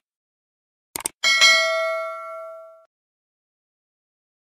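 A couple of quick clicks about a second in, then a single bright bell ding that rings out and fades over about a second and a half: a subscribe-and-notification-bell sound effect.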